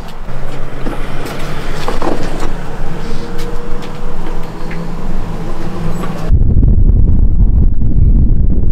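A vehicle engine running with a steady low hum, with a few faint knocks. About six seconds in it cuts abruptly to a loud low rumble of wind buffeting the microphone.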